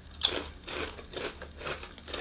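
Biting into a potato chip and chewing it: one sharp crunch about a quarter second in, then a run of smaller, irregular crunches.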